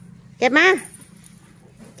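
Only speech: a woman's high, sing-song coaxing voice calling one short phrase about half a second in, over a faint low steady hum.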